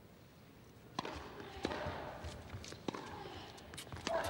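Tennis rally on an indoor court: a tennis ball being struck by rackets and bouncing on the hard court. After a near-quiet first second, it comes as a run of sharp knocks about every half-second to second.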